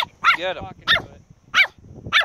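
Chihuahua barking at a crab: several short, high-pitched barks in quick succession.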